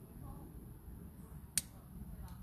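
A single sharp click about one and a half seconds in, over a steady low rumble.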